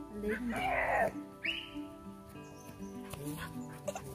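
A dog barks twice, once about half a second in and again around a second and a half, over soft background music.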